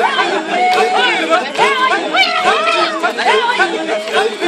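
A group of Maasai voices chanting together in overlapping parts, with held notes and repeated rising-and-falling calls, as the song for the jumping dance.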